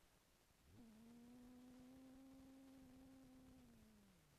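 A faint, steady, hum-like pitched tone. It starts with a quick upward glide about a second in, holds level, and sinks slightly in pitch near the end.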